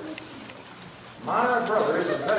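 A moment of quiet room tone, then a voice speaking that starts partway through.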